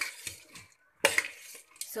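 Metal spoon stirring and tossing dry masala puffed rice in a steel bowl: a sharp clink of spoon on bowl at the start and another about a second in, each followed by the scraping rustle of the puffed rice mixture.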